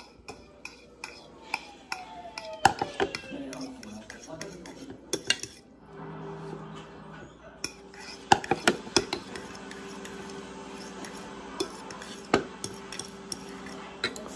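Metal utensil clinking and scraping against a bowl in a series of sharp clicks as noodles are stirred and mixed with their sauce. A steady hum sets in about six seconds in.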